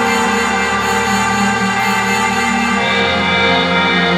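Electronic music played live on pad controllers: layered sustained synth tones, shifting to a new chord about three seconds in.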